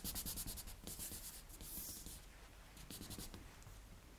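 Faint rubbing and small ticks of fingers pressing a plastic bunting cutter into thinly rolled sugar paste on a cornflour-dusted board, and pulling the excess icing away from around it. The sound grows fainter toward the end.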